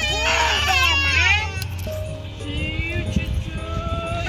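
A toddler crying and wailing while being strapped into a car seat, loudest in the first second and a half, then fainter whimpering cries.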